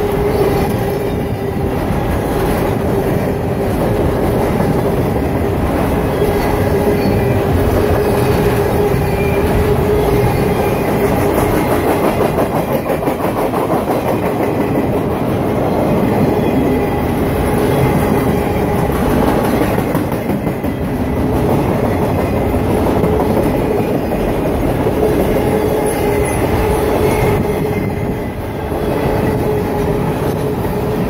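Loaded freight-train flatcars rolling past close by: steel wheels rumbling and clattering over the rails, with a steady whine running through it.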